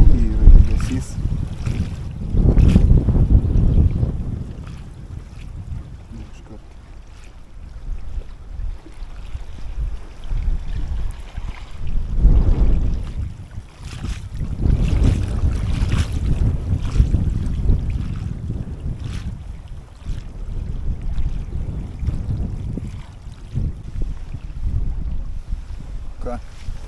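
Gusty wind buffeting the microphone, a low rumble that swells and fades in waves, with a few light clicks scattered through it.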